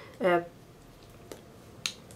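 A faint tap a little past halfway, then a single sharp click near the end, after a brief hesitant "uh".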